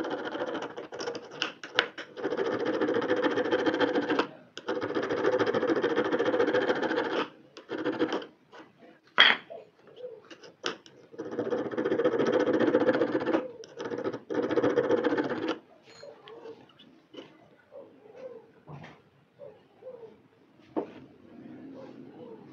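A small metal file scraped rapidly back and forth across a guitar fret wire set in a wooden block, flattening the fret's crown to make it like a worn fret. The rasping comes in four runs of a few seconds each, then gives way to scattered light taps and scrapes for the last few seconds.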